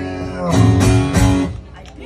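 Acoustic guitar strummed: a held chord, then a few hard strums about half a second in that ring out and die away near the end, closing the song.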